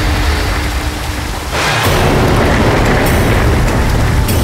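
Dramatic soundtrack sound effect: a deep, heavy rumble with dramatic music, then a sudden surge of loud rushing noise about a second and a half in.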